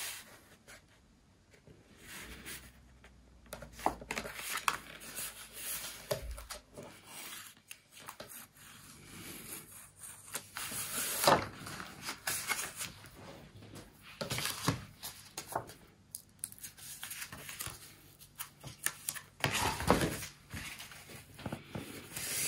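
Cardstock being handled, folded and pressed flat by hand, with the crackle of backing strips being peeled off double-sided Scor-Tape: irregular rustles, scrapes and crackles, a few louder ones near the middle and near the end.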